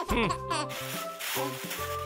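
Light background music, with a short falling sound at the start and a black plastic garbage bag rustling as it is handled.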